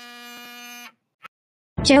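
Phone ringing with a steady buzzing tone that stops just under a second in; a short click follows, and near the end a voice starts loudly.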